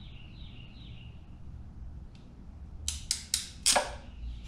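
Locking ratchet crimper clicking four times in quick succession, about three seconds in, as its handles are squeezed to crimp a terminal onto a wire.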